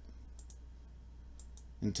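A quick pair of computer mouse clicks about half a second in, over a faint steady low hum. A man's voice starts just at the end.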